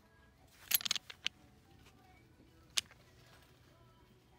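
Plastic clothes hangers clacking on a metal clothing rack as shirts are pushed along it: a quick cluster of clicks about a second in and a single sharper click near three seconds. Faint background music plays underneath.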